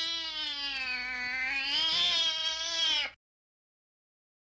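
One long, drawn-out cat yowl that sags a little in pitch, rises again, and cuts off suddenly near the end.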